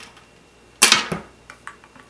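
One sharp click about a second in, then a few softer ticks: a metal 3.5 mm aux cable plug being handled and pushed into a portable speaker's jack.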